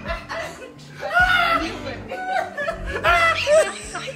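People laughing and calling out loudly over background music.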